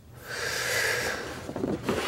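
A person's breath, one long airy breath lasting about a second.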